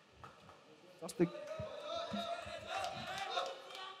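Faint voices in a large hall, with one sharp knock about a second in and a brief spoken "The..." just after it.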